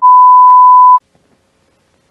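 A loud, steady, high-pitched test-tone beep, the kind that goes with TV colour bars. It is held for about a second and cuts off suddenly.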